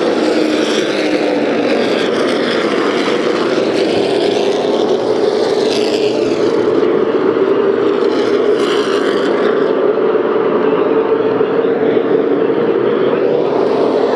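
A field of Super Late Model stock cars racing on an oval, their V8 engines merging into one continuous loud drone that holds steady without a break.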